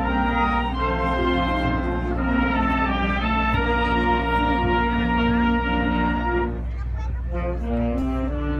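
Community orchestra playing a bolero medley live, the brass section carrying sustained chords over the strings. The brass thins out about six and a half seconds in before the next phrase begins.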